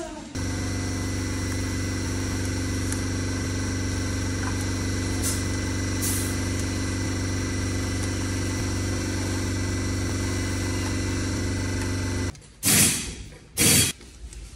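A machine running steadily with a strong low hum, cutting off abruptly near the end, followed by two short, loud bursts of rushing noise.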